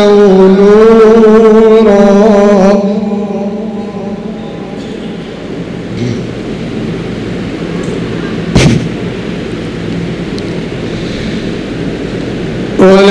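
A man reciting the Quran in a drawn-out, melodic style through a microphone and PA, holding a long wavering note that ends about three seconds in. A pause of steady background hiss follows, broken by a single sharp thump about eight and a half seconds in.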